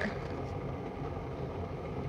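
Steady low background hum and room noise, with no distinct sounds.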